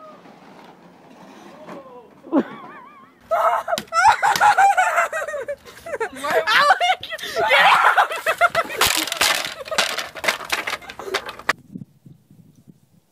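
Excited shrieking voices with wavering, sliding pitch, joined in the second half by a rapid run of sharp crashing knocks that stops suddenly.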